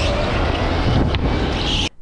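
Onboard sound of an electric go-kart at speed: a steady rush of wind noise on the camera microphone, with a single click about halfway, cut off suddenly near the end.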